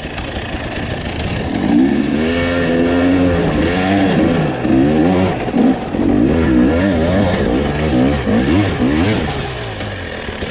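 Dirt bike engine on the move, revving up and down in repeated quick surges as the throttle is worked on a rough, loose trail.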